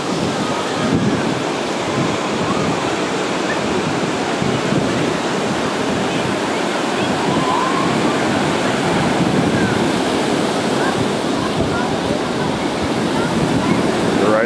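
Ocean surf breaking on a beach, a steady wash of waves, with faint distant voices in the background.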